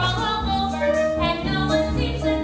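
A girl singing a musical-theatre song over instrumental accompaniment with sustained low bass notes.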